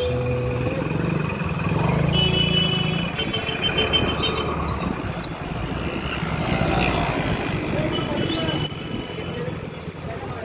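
Motorcycle engine running while riding through street traffic, with road and traffic noise throughout. Short high beeps come about two seconds in and again near the end.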